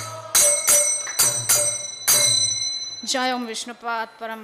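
Small hand cymbals (kartals) struck in a kirtan rhythm, each strike ringing in high metallic tones; the last strike, about two seconds in, rings out for about a second. A woman's voice starts chanting near the end.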